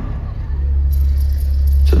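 Steady deep bass rumble through an arena sound system during a break in the spoken words.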